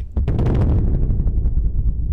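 Low, throbbing rumble of a motorcycle engine running at low speed in traffic, heard through the rider's own camera. It cuts in suddenly just after the start.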